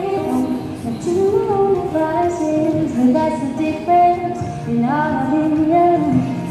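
A woman singing a song while playing an acoustic guitar, amplified through a microphone and small street amplifier.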